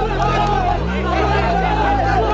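A group of young men shouting and cheering together in a celebration huddle, over background music with a deep bass line that changes note about every second.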